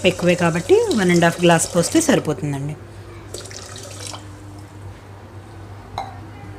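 Water poured in a stream into a steel pot of sugar, splashing, for sugar syrup. A voice talks over the first two and a half seconds, after which the pouring is heard more quietly.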